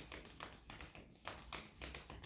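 A deck of tarot cards being shuffled by hand: faint, irregular soft taps and slides of the cards against each other.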